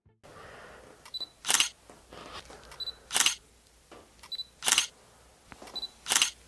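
Smartphone camera shutter sounding repeatedly as photos are taken, about one every second and a half: each shot is a short high beep followed by the shutter click, three times, with a fourth beep just at the end.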